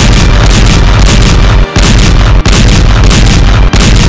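Loud, heavily distorted explosion sound effect: a run of booming blasts with a deep rumble, broken by three short gaps.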